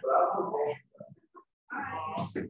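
A person's voice: a drawn-out vocal sound in the first second, then more talk starting near the end.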